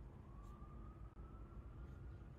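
Near silence: room tone, with one faint tone that rises slowly in pitch.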